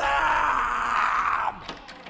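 A man's long, strained yell, the drawn-out end of a shouted "Tell them!", held for about a second and a half before it breaks off.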